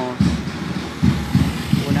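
Outdoor street noise with a low, uneven rumble of traffic. A man's voice starts near the end.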